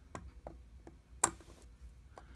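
A few small, irregular metallic clicks and taps of steel tweezers against a watch movement and steel case, the loudest a little past halfway, as the crown and stem are worked free.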